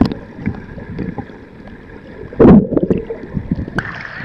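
Muffled underwater water noise around a submerged camera, with a loud low gurgling burst of bubbles about two and a half seconds in. Near the end the camera breaks the surface and the brighter sound of lapping, splashing water returns.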